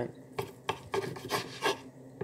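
Eating at the table: a run of about five short scrapes and clicks of a utensil against a plate, roughly a third of a second apart.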